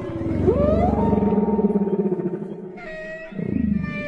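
A deep, drawn-out moaning whale call. It sweeps up in pitch about half a second in and holds for about two seconds, then a shorter call falls away near the end.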